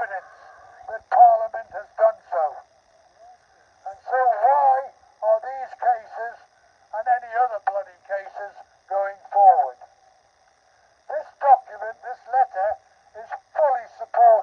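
A man's speech amplified through a handheld megaphone: thin and narrow-sounding, in short phrases broken by pauses.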